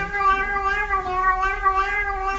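Tabby kitten giving one long, drawn-out meow held at a nearly steady pitch, wavering slightly.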